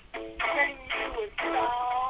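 A man singing a radio promo song, his voice gliding between notes and holding one long note in the second half.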